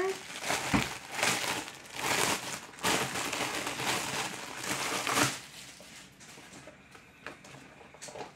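Clear plastic bag crinkling as it is handled and pulled at, for about five seconds. After that it drops to a few faint rustles.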